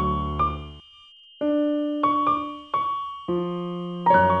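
Slow, soft keyboard music. Held chords fade out within the first second, there is a short pause, then single notes are struck one after another, and a low chord comes in near the end.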